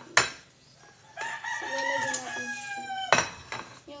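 A rooster crowing once, a single drawn-out call of nearly two seconds that drops in pitch at the end. Before and after it, a metal utensil strikes the wok with two sharp clacks.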